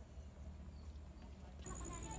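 Faint outdoor ambience with a low rumble. Near the end a rapid, evenly pulsing high chirp comes in abruptly.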